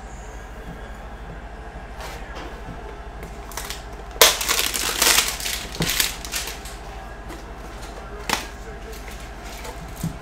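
A cardboard hanger box of trading cards being handled and opened, with a burst of crackling and crinkling of cardboard and plastic wrap about four seconds in that lasts about two seconds, then a sharp click a little later.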